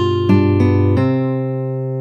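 Intro jingle music of plucked string chords, a new chord struck three times in quick succession in the first second, each ringing on and fading.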